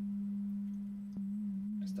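Low, steady sine test tone from an Elektron Digitakt sampler. A little over a second in, its pitch starts to waver evenly up and down, about three times a second, as the LFO begins modulating the tune.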